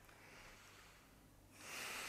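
One long breath drawn in through the nose, a contented sniff of freshly sprayed cologne, swelling up about one and a half seconds in after faint room tone.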